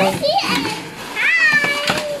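A high-pitched child's voice calling out twice in rising and falling squeals, without words, and a brief crackle of plastic wrap being handled near the end.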